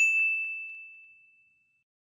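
A single bright bell-like "ding" notification sound effect, struck once and ringing away over about a second and a half.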